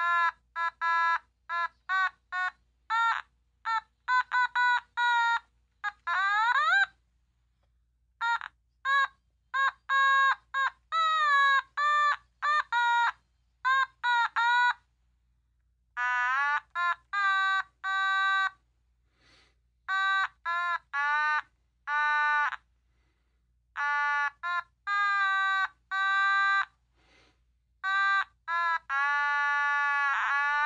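Otamatone played as a tune: a string of short, separate notes, several of them sliding up in pitch, with a couple of brief pauses.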